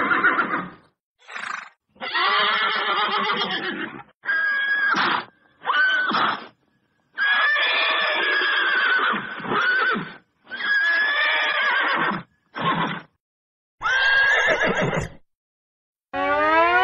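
A horse whinnying again and again: about ten neighs, each half a second to two seconds long with short gaps between them.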